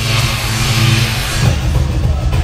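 Live band music through a stadium PA, with heavy bass and a loud hiss that swells and fades over the first second and a half.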